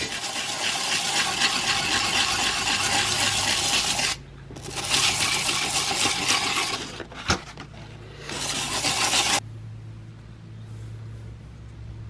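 Steel butter knife blade drawn by hand across 150-grit sandpaper, a coarse scraping in three long strokes, honing the edge. A sharp click comes between the second and third strokes. The scraping stops about nine seconds in, leaving a low hum.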